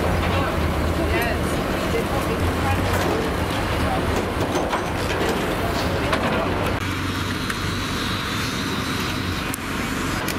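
A steady low engine hum from vehicles in a banger-racing pit area, with indistinct voices talking in the background; the mix changes slightly about seven seconds in.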